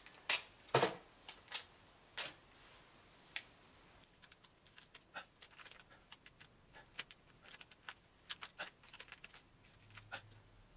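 Blue painter's tape being handled, crinkled and pressed into place by fingers: soft, irregular clicks and crackles, with a couple of louder ones in the first second and a run of small ticks through the second half.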